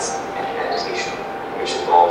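Narration from an animated explainer video on stress, played over the hall's loudspeakers and picked up at a distance, with a steady tone running underneath.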